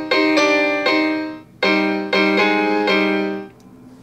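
Electronic piano chords from a PopuPiano chord pad playing a tango accompaniment pattern on a C minor chord. The chord is struck rhythmically in two short phrases, with a brief break about a second and a half in, and dies away near the end.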